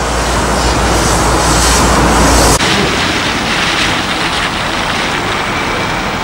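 Steady outdoor street noise from road traffic, a loud, even rush. A low rumble under it cuts off abruptly about two and a half seconds in.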